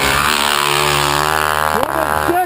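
Snow bike racing past close by at speed, its engine note sliding steadily down in pitch as it goes by and pulls away.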